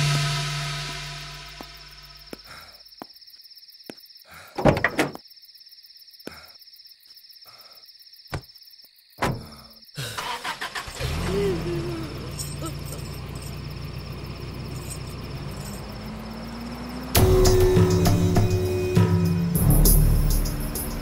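Film soundtrack: a music cue fades out over the first two seconds. A few sharp knocks follow in near quiet, then a steady low hum from about halfway, and loud music comes back about three seconds before the end.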